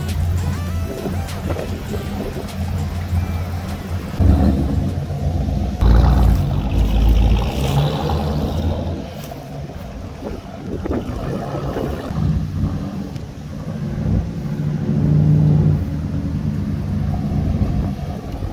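Pontiac G8 GT's 6.0-litre V8 with aftermarket Kooks headers, run hard at wide open throttle. It jumps in loudness about four seconds in and again, loudest, at about six seconds as the car launches and pulls away, then swells once more near the end as it comes back past.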